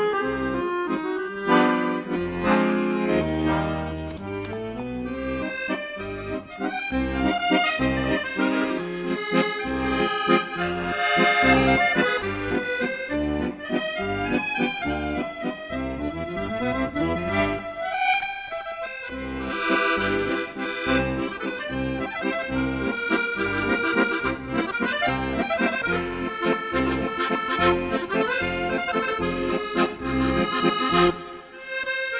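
Traditional folk music led by accordion, a lively tune over an even, steady bass pulse, with a quick rising run of notes about two-thirds of the way through.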